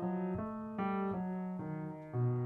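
Yamaha grand piano being played, a new note struck about every half second in an even, flowing line, picked up close by a pair of Samson C02 condenser microphones.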